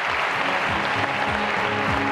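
Audience applauding, with music playing underneath.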